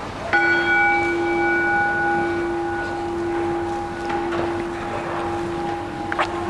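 A single altar bell struck once, about a third of a second in, with a low ringing tone that fades slowly. It is rung during the communion rite of a Catholic Mass.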